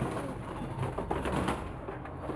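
Pigeons calling softly, low and steady, with a few faint clicks.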